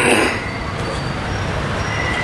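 Background noise of a microphone and sound system in a pause between recited verses: a steady low hum and hiss, with a short rush of noise at the start and a faint, steady high tone near the end.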